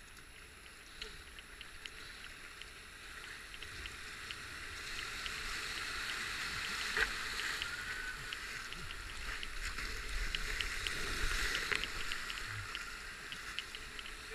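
Shallow river rapids rushing, the noise swelling as the kayak moves off flat water into the whitewater, with small splashes from the paddle strokes.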